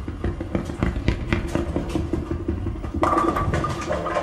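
Bowling alley sounds: a continuous low rumble of balls rolling on the lanes under a dense clatter of pins being knocked, which grows louder about three seconds in.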